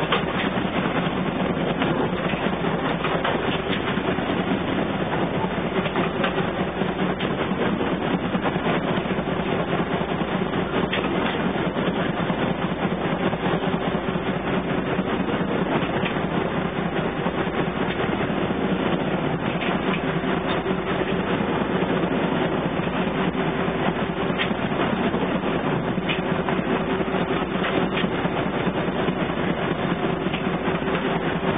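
Wichmann 3ACA three-cylinder two-stroke diesel engine running steadily under way at good speed, heard in the wheelhouse.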